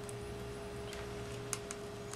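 Quiet room tone with a steady hum, and a couple of faint small clicks about one and a half seconds in as metal forceps are handled against the opened iPod's frame and circuit board.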